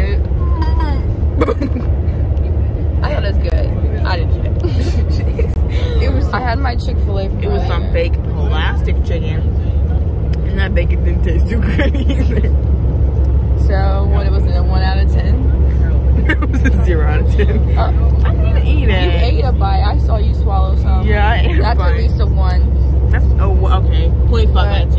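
Steady low rumble of a charter bus heard from inside the passenger cabin, with voices talking over it on and off.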